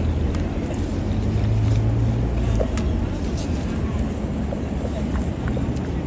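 Low, steady hum of street traffic, a vehicle engine, strongest over the first two or three seconds. Scattered faint clicks and smacks come from the bulldog eating off a paper plate.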